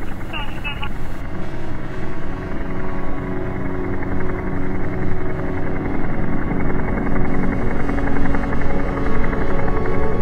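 Figeater beetle's wingbeats slowed down in slow motion, heard as a steady, low, rotor-like throbbing in place of the usual buzz.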